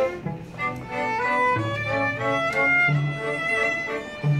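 String quartet of two violins, viola and cello playing a classical piece. After a short break about half a second in, the upper line climbs note by note over cello notes below.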